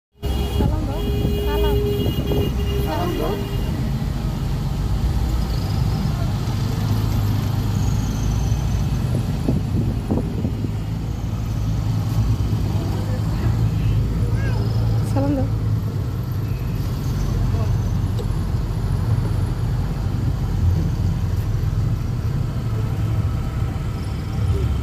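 Steady low rumble of a moving bus's engine and road noise heard inside the passenger cabin, with passengers' voices over it.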